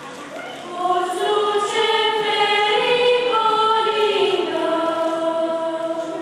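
Girls' choir singing a Romanian Christmas carol (colind) in long held notes. A new phrase swells in about a second in and fades near the end.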